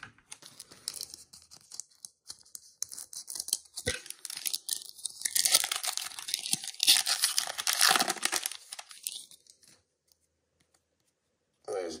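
Foil trading-card pack wrapper being torn open and crinkled in the hands: a dense crackling tear that is loudest in the middle and stops about ten seconds in.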